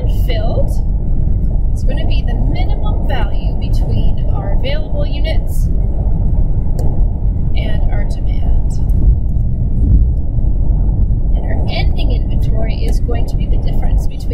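A steady low rumble of background noise, with quiet, indistinct speech on top at moments.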